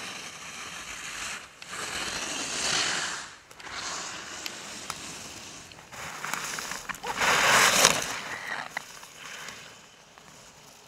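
Racing skis carving and scraping on hard groomed snow, a hissing scrape that swells on each turn. It is loudest about seven to eight seconds in, as the skier carves past close to the microphone.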